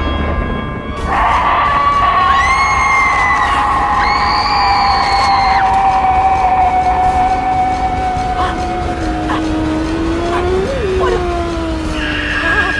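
Eerie horror-film score: a long sustained high tone that slowly sinks in pitch, with short rising swoops laid over it about two and four seconds in. A lower tone rises and falls near the end.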